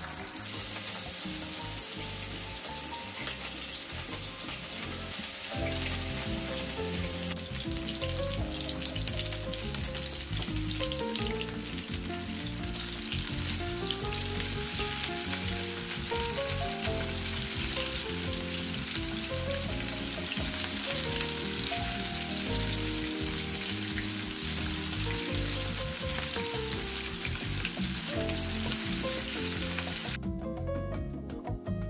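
Meatballs frying in oil in a nonstick grill pan, a steady sizzle that grows fuller a few seconds in as the pan fills. Background music with a melody plays over it.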